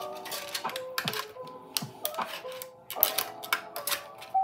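Background music with a steady melody, over sharp plastic crackles and clicks from a clear plastic sticker sheet being handled.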